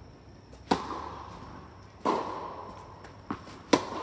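Tennis racket strings striking the ball three times in a rally: a serve about two-thirds of a second in, the return just after two seconds, and a forehand near the end, the loudest, with a lighter ball bounce just before it. Each hit is a sharp pop that echoes in the large indoor hall.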